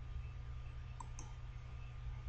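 Two computer mouse clicks about a fifth of a second apart, over a steady low hum.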